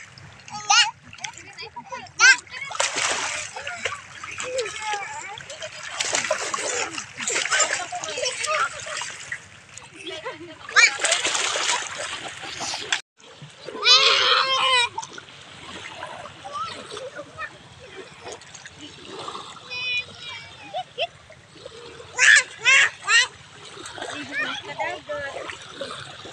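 Children splashing through shallow sea water in several long bursts, mixed with children's voices; high-pitched shouts ring out about midway and again near the end.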